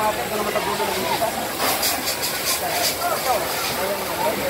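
Fire hose spraying water onto smouldering debris, a steady hiss that comes in several stronger pulses around the middle, with people talking over it.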